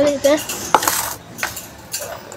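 Metal utensils or steel dishes clinking: a few sharp clinks about a second in, another a little later and one near the end.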